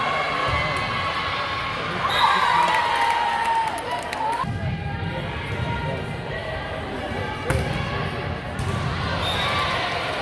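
Volleyball rally in a gym: sharp ball contacts about half a second in, near the middle and past seven seconds, over spectators' voices. A long drawn-out shout, sliding slightly down in pitch, rises over the crowd for about two seconds before the middle hit.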